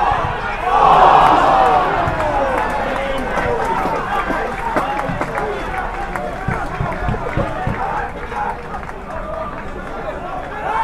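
Spectators at a small football ground shouting together, loudest about a second in as a goalmouth chance is scrambled and missed. The crowd noise then falls away into scattered shouts and voices.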